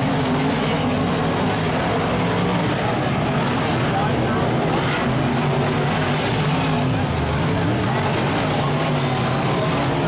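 Several dirt-track modified race cars' V8 engines running together as the cars circle the dirt oval, a steady, slightly wavering engine drone.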